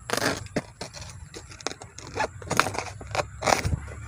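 Small knife cutting banana leaves from the plant: a run of irregular short scraping cuts as the blade slices through the leaf.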